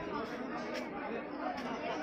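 Crowd chatter: many people talking at once, with no single voice or word standing out.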